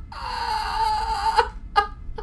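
A man's high-pitched, drawn-out squealing laugh, held for over a second, followed by a short gasping burst of laughter near the end.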